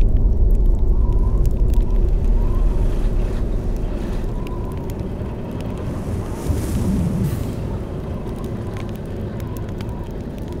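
A deep low boom that opens into a heavy low rumble, slowly fading, with a faint steady tone held above it and a small swell about two-thirds of the way through.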